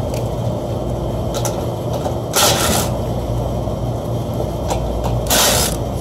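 Rooftop HVAC unit running with a steady low hum. It runs with a dead condenser fan motor and is overheating. Two short bursts of hiss come about two and a half and five and a half seconds in.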